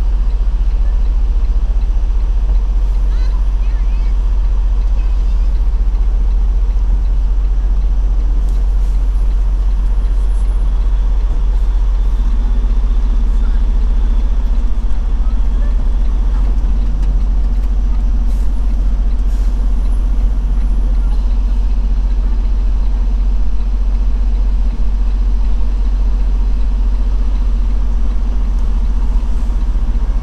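Detroit DD15 diesel engine of a 2016 Freightliner Cascadia running at low speed, heard from inside the cab as a steady low hum. About twelve seconds in, a slightly higher tone joins it as the truck creeps forward.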